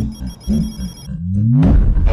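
Brazilian phonk track: a high, telephone-like ringing tone over pulsing bass, then a rising bass glide about a second in that leads into a loud, bass-heavy drop near the end.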